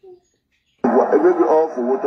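A person's voice starting abruptly about a second in after a near-silent gap, loud and thin-sounding as if coming over a phone line.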